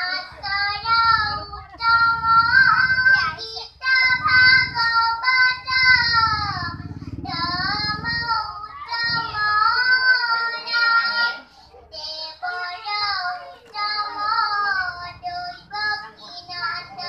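Children singing a song, in phrases of a few seconds with short breaks between them.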